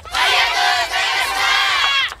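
A yosakoi team of adults and children shouting together in one long loud call that cuts off sharply just before the end.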